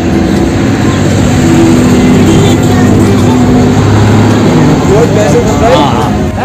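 A group of people talking indistinctly over loud, steady background noise.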